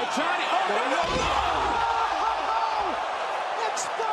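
Wrestling-arena sound: crowd noise with shouting voices throughout, and a heavy thud on the wrestling ring about a second in as a wrestler is driven down onto the mat.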